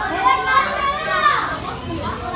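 Children's voices shouting and chattering in high pitch, rising and falling, easing off near the end.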